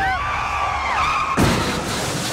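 A high, wavering squeal with gliding pitch, cut off by a single sudden slam about a second and a half in.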